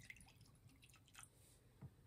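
Near silence: room tone with a few faint, scattered small clicks.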